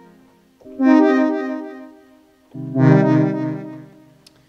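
Aalto software synthesizer playing single short notes: one fades out, a new one sounds about half a second in, and a lower one comes near the end. Each starts soft, brightens sharply a moment later and then fades, with a quick flutter in its tone. The flutter comes from Envelope 2, set to delay and repeat, sweeping the filter cutoff and the oscillator's wave shape.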